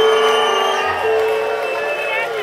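Live rock band holding a sustained chord on electric guitars, with a low bass note joining about a second in, as the song closes. A crowd cheers underneath.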